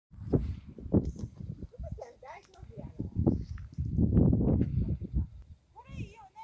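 Irregular low rumbling and bumps on the microphone, loudest about four seconds in, with a few brief fragments of a person's voice.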